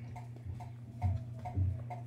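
Light, even ticking, about four ticks a second, over a steady low hum, with two soft thumps about a second in and a little after halfway.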